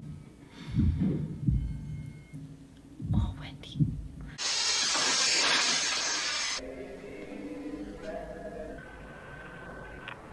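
Horror film soundtrack playing: low, heavy thumps in the first few seconds, then a loud rush of hissing noise lasting about two seconds in the middle, then quieter sustained tones.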